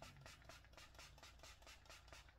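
Faint, quick run of hissing spritzes from a Saint Luxe setting-spray pump bottle misting a face, several pumps a second.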